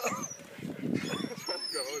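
Young men laughing and calling out, with laughter near the end. Short high chirps sound above the voices.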